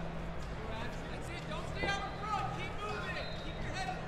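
Arena ambience: a steady low hum and background murmur, with faint, distant shouted voices in the middle.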